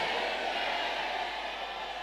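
A faint, steady hiss of room and sound-system noise that fades slowly, with no distinct events.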